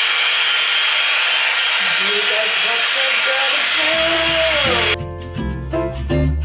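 Round hot air brush (hair dryer brush) blowing, a loud, steady rush of air that cuts off suddenly about five seconds in. Background music with plucked guitar comes in under it about two seconds in and carries on after the blower stops.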